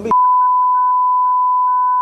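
Broadcast censor bleep: a single steady high-pitched tone that replaces the speech for about two seconds, masking words edited out of the politician's heated speech.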